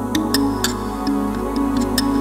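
Keyboard music: sustained chords with sharp percussion clicks and ticks scattered irregularly over them.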